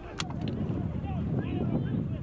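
Wind buffeting the microphone over the steady rumble of a rescue inflatable's motor on open sea, with several distant voices calling out at once. A single sharp click comes just after the start.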